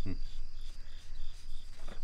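Crickets chirping in a steady, even rhythm of about four chirps a second, over a low background hum.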